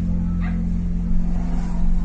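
Car running along a street, heard from inside the cabin as a steady low engine and road drone. A few short sounds rise over it, about half a second in and again near the end.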